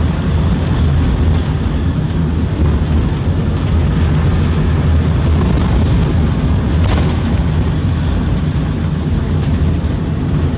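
Steady low rumble of a moving car: engine and tyre noise on the road.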